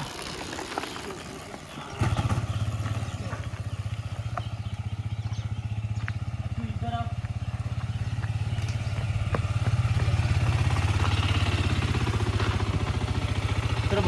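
Single-cylinder engine of a KTM RC sport bike idling steadily after being push-started, because it would not start on its electric starter. The engine sound comes in abruptly about two seconds in.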